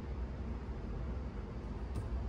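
Quiet room tone: a steady low hum with a faint hiss, and a faint click near the end.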